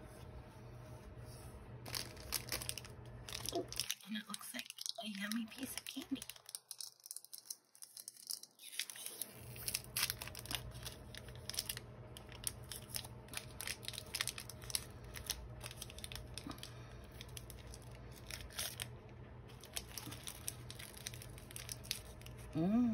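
Paper and card rustling and crinkling as hands handle a handmade junk journal and its paper inserts, with many small taps and clicks.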